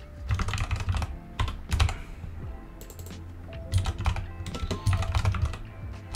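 Typing on a computer keyboard: runs of quick keystrokes with a pause of about a second and a half near the middle, over a low steady hum.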